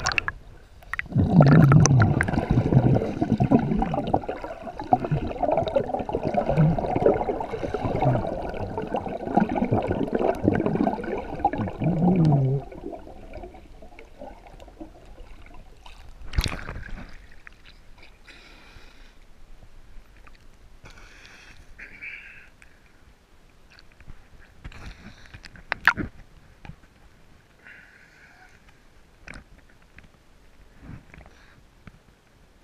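Sea water gurgling and sloshing around a camera held at and under the surface, heard muffled from underwater. The noise is loud for the first dozen seconds, then drops to a quieter wash with a few short bubbling splashes.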